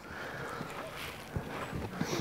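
Footsteps crunching on ground covered with a thin layer of graupel (snow pellets), quiet and irregular, with one or two sharper steps.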